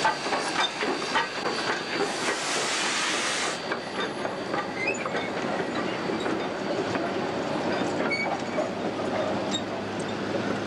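Steam locomotive moving slowly past with a hiss of steam that stops suddenly about three and a half seconds in, then its passenger carriages rolling by, wheels clicking over the rail joints.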